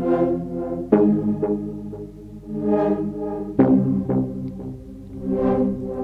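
Sytrus synthesizer chords playing a slow looped progression, the chord changing about a second in and again just past the middle. Each chord swells brighter and then darker as a filter envelope sweeps the cutoff down and then back up, giving three slow swells in all.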